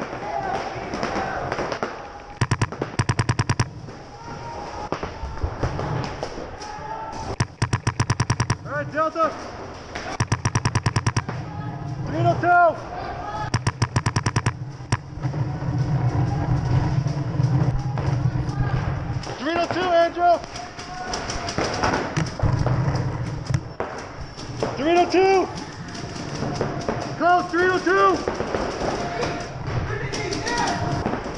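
Paintball markers firing rapid strings of shots, several short bursts in the first half (around 2–3 s, 7–8 s, 10–11 s and 14 s), with fewer shots later.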